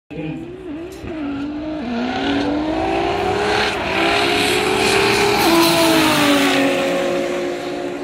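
Race car engines at full throttle in a roll race, a 1000 hp Nissan R35 GT-R against a 2JZ-engined Toyota Corona. The engine note climbs steadily in pitch, drops at a gear change about five and a half seconds in, then carries on.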